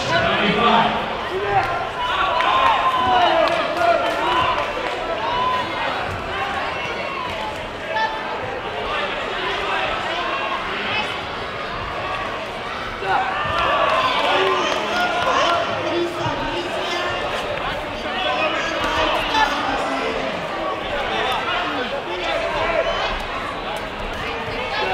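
Many indistinct voices overlapping as people talk and call out across a sports hall, with a few thuds.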